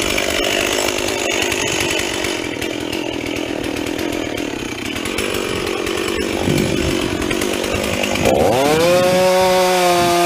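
Chainsaw cutting into the trunk of a large dead elm, the engine running under load. About eight seconds in, its pitch rises and holds steady and high.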